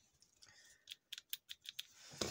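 A quick run of about eight faint, sharp plastic clicks, starting about a second in, from a car power-window switch circuit board being handled.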